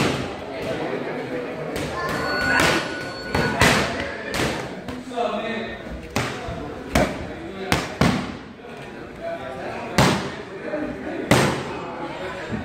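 Boxing gloves striking focus mitts: sharp, irregular smacks, about ten of them, some landing in quick twos and threes as punch combinations.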